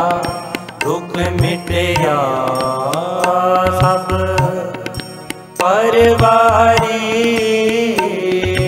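Shabad kirtan music: a sustained melodic line that bends in pitch, over low tabla strokes at roughly two a second. Just before six seconds the music dips briefly, then comes back louder.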